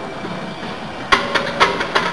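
Iron plates on a heavily loaded barbell clanking against each other and the bar during a bench press: a quick run of sharp metallic clanks starting about halfway through, over a steady gym background.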